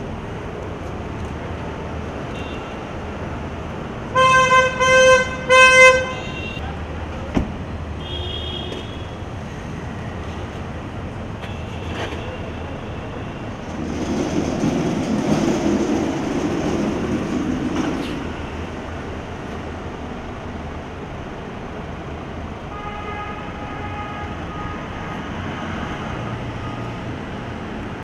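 Car horns honking in street traffic: three short, loud honks about four seconds in, fainter horn tones later and again near the end. A low rumble swells and fades in the middle.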